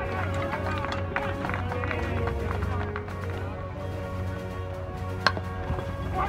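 Music playing, with a single sharp crack about five seconds in from a metal baseball bat hitting the ball.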